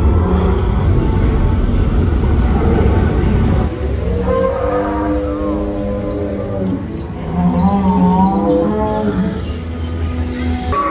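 Boat-ride soundtrack through park speakers: a loud low rumble for about the first four seconds, then sustained music notes with a few gliding, wavering calls over them.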